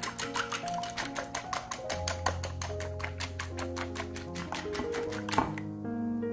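Eggs being beaten with a whisk in a glass baking dish: rapid clicking of the whisk against the glass, several strokes a second, with one louder knock just before the clicking stops near the end. Background music plays underneath.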